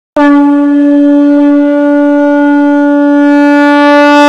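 A conch shell (shankh) blown as a horn: one long, loud, steady note that starts abruptly just after the beginning.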